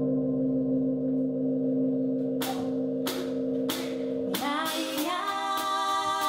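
Live band's sustained, droning low chord with three short hissing percussion strokes about two-thirds of a second apart. A woman's voice then enters a little over four seconds in, gliding up into a held sung note.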